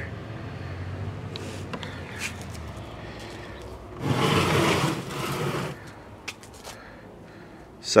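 Handling noise: a rubbing rustle lasting about a second and a half from about four seconds in, with a few light clicks and taps, over a low steady hum.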